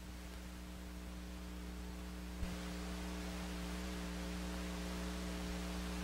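Steady electrical mains hum with a light hiss, with one faint click about two and a half seconds in.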